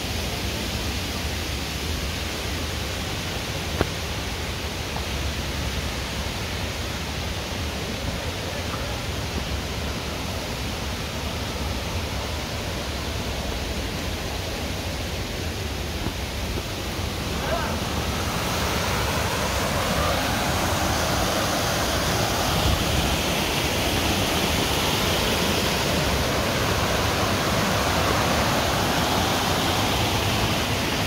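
Steady rushing of small waterfall cascades on a mountain stream, growing louder a little past halfway through as the falls come nearer.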